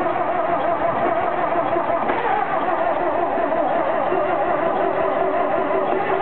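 Willème LB 610 truck's diesel engine running just after being restarted, its note wavering and unsteady.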